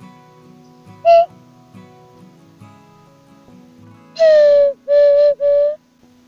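A wooden bird-call whistle (pio) is blown to imitate a bird's short call. It gives one brief clear note about a second in, then three longer whistled notes near the end, each dipping slightly in pitch. Quiet acoustic-guitar music plays underneath.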